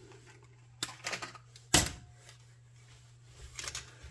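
Small clicks and taps of picture wire and hand tools being handled on a workbench, with one sharp click a little before two seconds in and a few lighter ones near the end, over a low steady hum.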